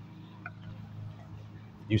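Low outdoor background noise with a steady low hum, and one brief faint sound about half a second in.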